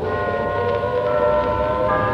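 Ambient music: a sustained chord of several steady held tones, slowly swelling in loudness, with another tone joining near the end.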